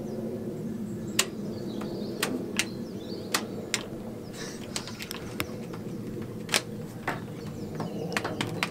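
Sharp, irregular clicks, about ten of them, as a canal shore-power bollard's trip switch and socket are worked to restore a supply that keeps tripping, over a steady low hum.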